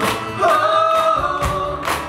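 A live band performing: several voices hold long sung notes over acoustic guitar, with a steady beat of handclaps about twice a second.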